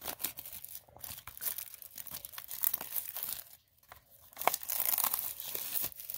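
Plastic shrink wrap being torn and peeled off a small cardboard box, crinkling and crackling, with a brief pause a little past the middle.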